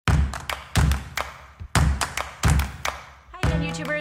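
Intro jingle built on a beat: five heavy kick-drum thumps with sharp percussive hits between them, ending in a held pitched note about three and a half seconds in.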